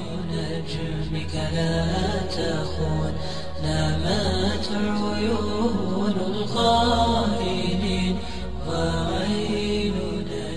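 Music: a voice chanting over a steady low drone.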